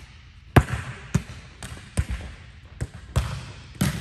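Volleyballs being struck and bouncing on the gym floor: seven sharp smacks at uneven intervals, the first and last the loudest, each ringing on in the gym's echo.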